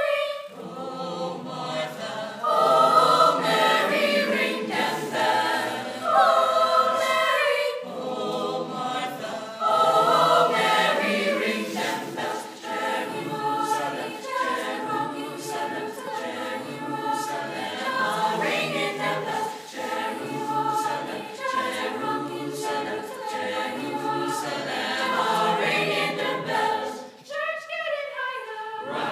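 School chorus singing in several parts. Loud held chords swell up a few times early on, then give way to a more rhythmic, pulsing passage.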